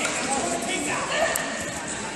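Ambience of a large indoor sports hall: a steady wash of room noise with faint, distant voices.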